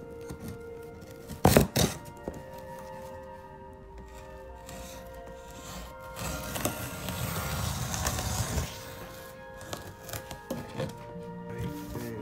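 Background music throughout, over a cardboard shipping box being opened: a blade cutting its packing tape, two loud thumps about one and a half seconds in, and a longer stretch of cardboard and tape rustling and scraping from about six to eight and a half seconds in.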